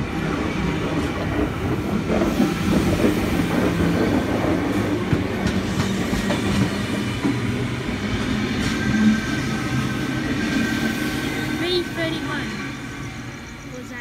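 NSW TrainLink V-set double-deck electric intercity train running slowly past the platform close by, a steady rumble of wheels and running gear on the rails that fades as the last car goes by near the end.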